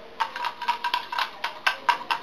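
A TBR jar of folded paper slips being shaken quickly, the slips rattling inside in a fast, even run of clicks, about seven a second. A steady high tone sounds under the rattling.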